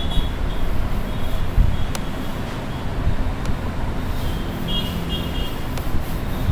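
Steady low rumble like road traffic. Over it are a few short high squeaks near the start and again about four to five seconds in, with a sharp tick about two seconds in and another just before the end, fitting chalk writing on a blackboard.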